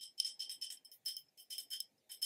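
Long fingernails tapping a glass cleanser bottle in a quick, irregular run of light taps, each leaving a brief high glassy ring.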